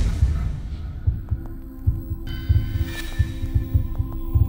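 Logo intro sound design: deep, throbbing bass pulses over a low hum, with sustained tones joining about a second in.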